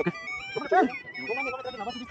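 Indistinct talking among a small group of people, over faint background music.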